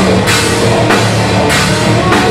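Death metal band playing live, close on the drum kit: loud drums with cymbal crashes a little over half a second apart, over distorted guitars and bass.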